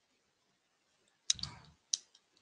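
Two sharp clicks from a computer keyboard or mouse, about two-thirds of a second apart, the first followed by a brief low thud.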